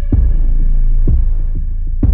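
Soundtrack music: a deep pulsing bass with a heavy thump about once a second, under faint held tones.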